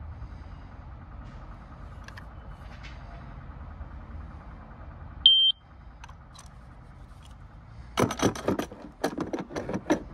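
A single short, high electronic beep from a Spectra HR320 laser detector about five seconds in, over low background noise. Near the end, a run of sharp clicks and knocks as the detector is handled.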